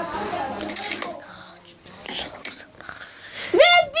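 A boy's quiet mumbling and whispering, with a few short hissy crackles about two seconds in; he starts speaking clearly just before the end.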